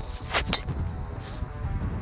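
Golf driver striking a ball off the tee: one sharp crack about half a second in, with low wind rumble on the microphone.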